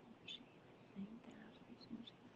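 Near silence with faint, low murmured speech in short bits, a voice talking under the breath.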